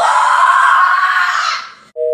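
A boy screaming, one long loud scream of about two seconds that starts suddenly and fades out near the end.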